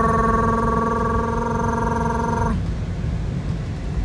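A car horn sounding one long steady tone that cuts off about two and a half seconds in, over the low rumble of road noise in slow traffic.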